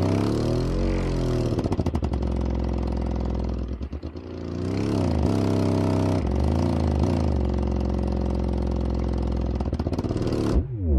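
Sundown Audio LCS prototype 10-inch subwoofer, with a poly cone and a double-stacked motor, playing a loud low test tone in free air at large cone excursion. The tone is buzzy with overtones. Its pitch glides down and back up a few times, holds steady in between, and dips in level briefly about four seconds in.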